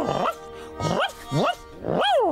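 Cartoon robot dog giving a few short, excited yapping barks, each sliding up in pitch, over faint background music.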